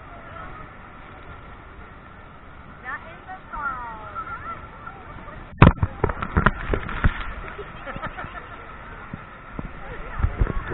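Steady, muffled rush of the falls and the boat heard through a GoPro's waterproof case, with voices crying out a few seconds in. About halfway through comes a sharp knock on the case, then a quick run of smaller knocks.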